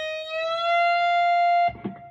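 Electric guitar: a single note on the high E string at the 11th fret (E-flat) is bent up a whole step to F, reaching pitch in about half a second. The note is held steady, then muted abruptly near the end, leaving only faint ringing.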